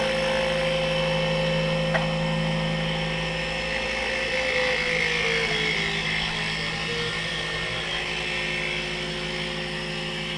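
Taig CNC mini mill running a profile cut: the spindle motor hums steadily as the end mill cuts. The machine's whine shifts pitch in small steps from about four seconds in, and there is a single light click about two seconds in.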